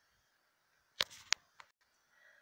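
About a second of dead silence, then two sharp clicks about a third of a second apart with a short rustle between them, and a fainter third click just after.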